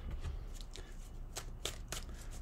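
Tarot cards being handled: a few faint flicks and taps of the cards, most of them in the second half.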